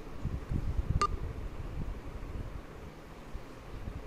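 Low rumble and rustle of handling noise on a handheld phone microphone, with one short sharp click about a second in.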